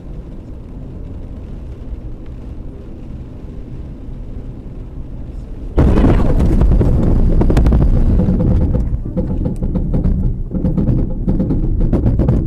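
Dashcam audio inside a car driving in rain on a wet road: a steady low rumble of tyres and rain, then about six seconds in, a sudden much louder, rougher rumble that carries on to the end.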